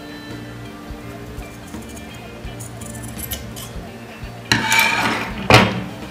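Steel dressmaking scissors snipping diagonally across the corner of a light cotton fabric piece, with small metallic clicks of the blades. A louder clatter and rustle comes near the end. Steady background music plays underneath.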